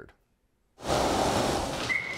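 A moment of silence, then a steady rushing noise starts abruptly about a second in and runs on, with a brief high tone near the end.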